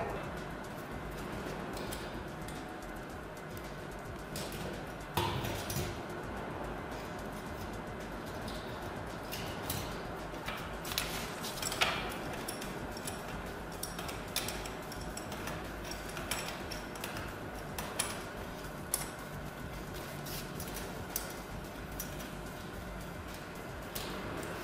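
Scattered clicks and knocks of copper pipework and fittings being handled and fitted onto a mounting board, over a steady low hum.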